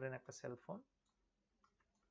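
A man's voice lecturing, breaking off just under a second in, then near silence with a few faint clicks.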